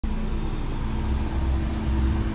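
Volkswagen Golf hatchback idling: a steady low engine rumble with a faint constant hum above it.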